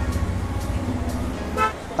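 Road traffic: a low steady rumble with a faint held horn tone. The rumble fades about a second in, and a short vocal sound comes near the end.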